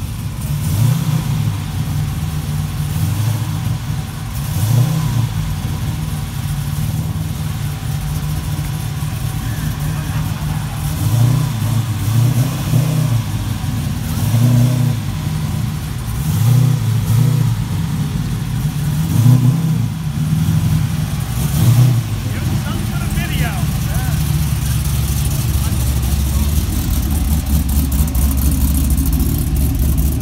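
Red 1969 Chevrolet Camaro restomod's engine idling and being blipped, with about eight short throttle revs over the first twenty-odd seconds. After that it settles into a steady, deeper idle.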